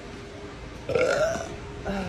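A woman's loud burp, starting about a second in and lasting about half a second.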